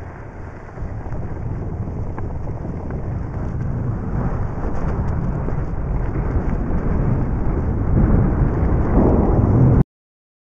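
Wind buffeting the camera microphone together with skis scraping and hissing over groomed snow during a downhill run, a rough rumbling noise that grows louder as speed builds and cuts off suddenly just before the end.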